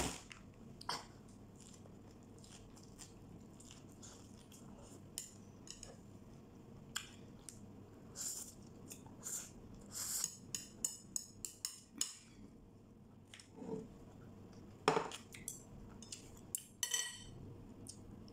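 Chopsticks clicking and scraping against a ceramic plate while picking up fried noodles, in quiet, scattered short clicks that come thicker about halfway through, with soft chewing sounds between.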